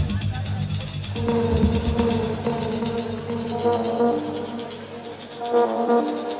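Electronic dance music from a DJ set, with fast, even hi-hat ticks over synth chords. The bass and kick drop out about three seconds in, leaving the synths and hi-hats, as in a breakdown.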